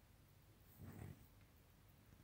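Near silence: room tone, broken by one brief soft low sound about a second in.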